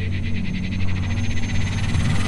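A rapid, evenly pulsed trill, about fifteen pulses a second, over a low steady hum.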